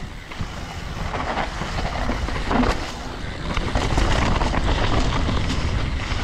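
Wind buffeting an action camera's microphone over the rumble of a freeride mountain bike's tyres on a steep dirt trail, with frequent short knocks and rattles as the bike rolls over roots.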